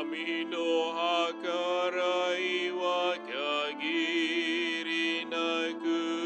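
A singer's voice chanting the Japanese responsorial psalm of a Catholic Mass, the melody wavering and bending in pitch, over a steady held accompaniment.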